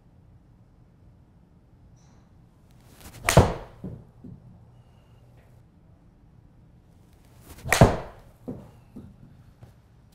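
Two golf shots with a Cobra RAD Speed 5-iron, about four and a half seconds apart: each is a sharp club-on-ball strike into the simulator screen, followed by a few smaller knocks. The second shot is a mis-hit.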